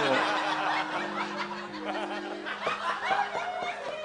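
Audience laughing and chuckling, many voices scattered together, over a few low steady held tones.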